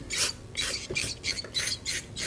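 Aerosol can of brake cleaner spraying through its straw nozzle onto a brake caliper piston in short hissing bursts, about three a second.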